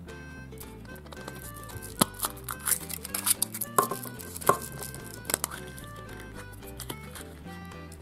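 Soft background music with held notes, over a scatter of sharp clicks and crinkles from a Kinder Surprise egg being unwrapped and its yellow plastic toy capsule being snapped open by hand, bunched about two to five seconds in.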